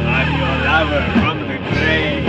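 Doom metal band playing: a held low guitar-and-bass chord under drum hits, with a high lead line that bends and wavers up and down over it.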